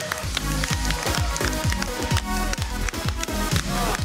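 Upbeat electronic dance music with a steady beat and repeated downward-sliding synth swoops.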